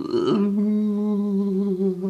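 A man humming one long, steady note.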